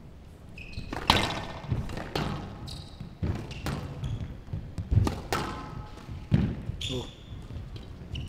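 Squash rally: the ball hit by rackets and striking the glass court walls in an irregular series of sharp cracks, with short high squeaks from players' shoes on the court floor.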